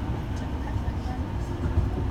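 Tama Monorail car running along its track beam, heard from inside the cabin: a steady low rumble of the rubber-tyred straddle-beam train under way.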